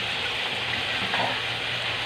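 Pork and vegetables frying in a nonstick pan, oyster sauce just added: a steady sizzle.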